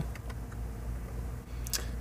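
Steady low hum inside a semi-truck cab, with a few faint clicks near the end.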